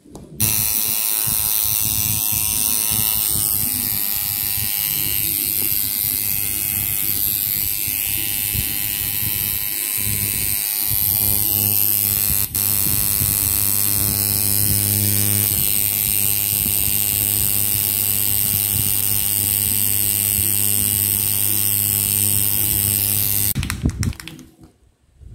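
Homemade wood-frame eight-wrap coil tattoo machine running on about 8.8 volts from its power supply: a steady electric buzz that starts suddenly about half a second in, dips for an instant about halfway through and cuts off just before the end.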